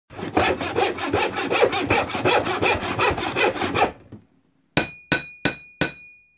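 Fast, even sawing strokes, about six a second, stopping about four seconds in. Then four sharp metallic strikes about a third of a second apart, each left ringing.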